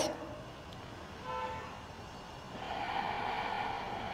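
Quiet room with a brief faint tone about a second in, then a slow, soft breath out starting about two and a half seconds in.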